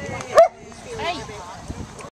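A dog gives one sharp yap a little under half a second in.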